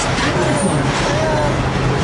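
Amusement-park ride car running along its rail track: a steady noise with a constant low hum beneath it.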